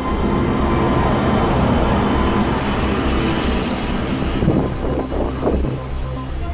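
A road vehicle passing close by: a rush of noise that swells over the first few seconds and fades away after about four seconds.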